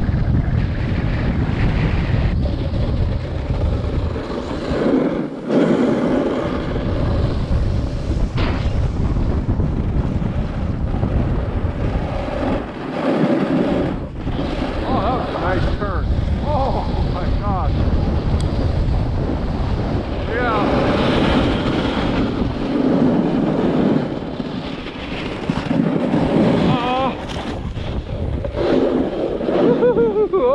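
Wind buffeting the microphone as a snowboard carves across firm, wind-packed snow under a traction kite, with the board's edge scraping the crust. There are a few brief wavering whistles about halfway through and near the end.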